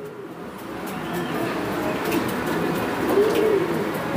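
Domestic pigeons cooing, a low murmur that grows louder over the first two seconds.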